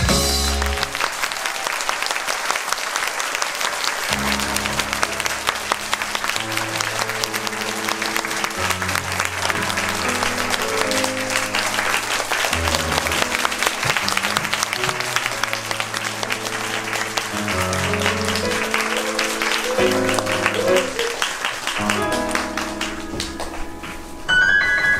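A theatre audience applauding steadily over an instrumental music track, whose bass line comes in about four seconds in.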